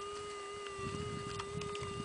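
Minelab metal detector giving a steady, unbroken tone, with faint scraping of soil and stones underneath.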